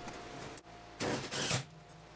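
Two short bursts of crackling MIG welding, about a second in, as sheet-steel parts are tack-welded.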